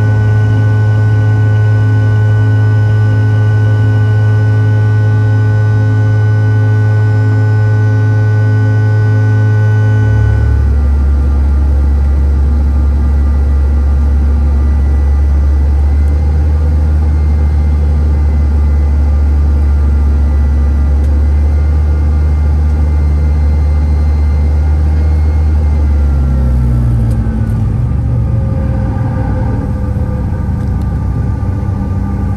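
Jet airliner engines heard from inside the cabin over the wing: a loud, steady drone with several whining tones during the climb-out. About ten seconds in, the sound changes abruptly to a lower, steady drone on the landing approach, and near the end the whine falls as the jet slows on the runway.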